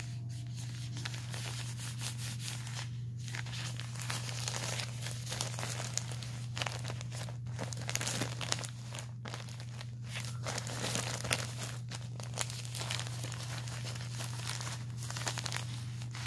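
Plastic backsheet of a Bambino adult diaper crinkling as a hand rubs and squeezes it, in uneven bouts with brief pauses, over a steady low hum.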